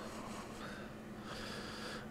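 Quiet pause: faint background hiss with a low steady hum, and a slight swell of breathy hiss in the second half.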